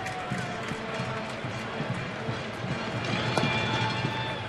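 Ballpark crowd murmur with faint music and scattered voices. About three and a half seconds in comes a single sharp pop as a pitched baseball hits the catcher's mitt.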